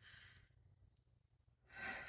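Near silence, then a soft breath drawn in near the end, just before speech resumes.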